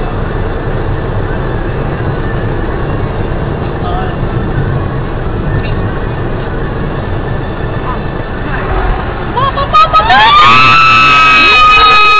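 Steady road and engine rumble inside a moving car's cabin. About ten seconds in it is drowned by loud, high-pitched screaming with wavering pitch as the occupants react to danger ahead.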